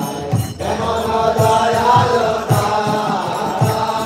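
Devotional kirtan: voices chanting a mantra to a sustained melody, accompanied by regular drum beats.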